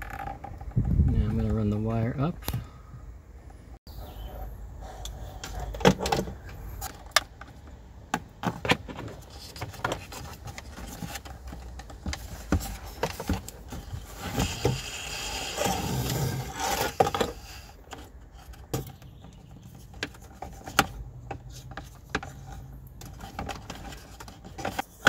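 Scattered clicks, knocks and rattles of hard plastic as the removed gauge pod and its white housing are handled, pressed and fitted together by hand, with the antenna cable worked around it. A brief murmur of voice about a second in.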